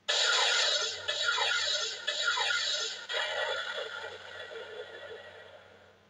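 Electronic sound effect from a talking Buzz Lightyear action figure, played through its small built-in speaker. It is a sudden burst of hiss with a few short falling tones, like a sci-fi blast, fading out steadily over about six seconds.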